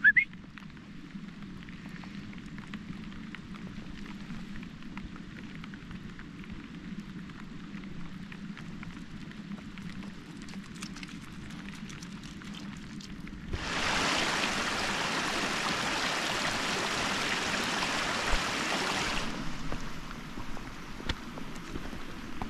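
Rain on a wet fell path: a steady background of falling drops with scattered light ticks, broken about two-thirds of the way in by a loud hiss of heavier rain that starts and stops abruptly after about five seconds. A brief rising squeak sounds at the very start.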